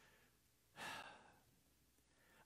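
Near silence, broken by one short, faint breath from a man about a second in.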